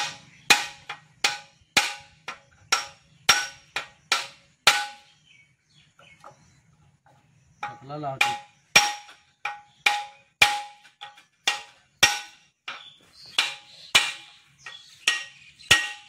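Hammer blows ringing on a steel tool set against a seized bolt on a Piaggio Ape engine, about two sharp metallic strikes a second, pausing for a few seconds midway. The hammering is to shock loose a bolt too tight to undo with a spanner.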